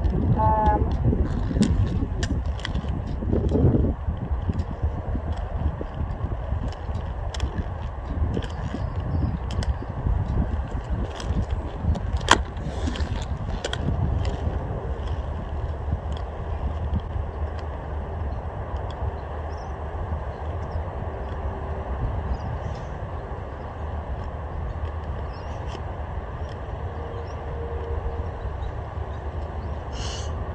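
Quad roller skate wheels rolling over a hard outdoor court surface, a steady low rumble that grows a little quieter in the second half. Scattered small clicks and knocks run through it, with one sharp click about twelve seconds in.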